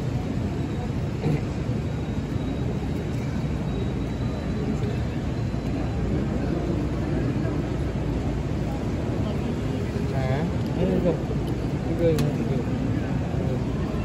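Steady murmur of crowd chatter and background voices, with a few voices standing out from about ten seconds in.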